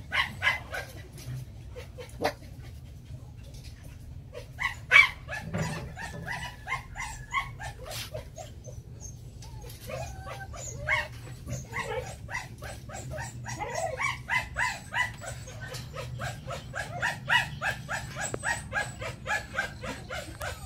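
A litter of young Phu Quoc ridgeback puppies making many short, high yips and whines. The calls are scattered at first and come thick and fast, several a second, through the second half, with one sharp louder yelp about five seconds in.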